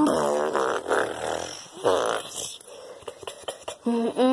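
A human voice imitating monster roars and growls in a few rough, wavering bursts over the first two seconds or so. Light clicks and taps follow.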